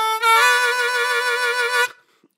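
Blues harmonica played close into a microphone: a phrase that steps up to a new note just after the start and holds it as one long note with a slight waver, stopping just before the end. It is played with the rounder, less bright tone that is set against a brighter, more cutting way of playing the same phrase.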